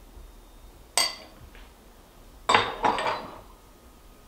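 A metal spoon clinking against a ceramic plate and a bowl: one sharp clink about a second in, then two louder clinks in quick succession just past halfway.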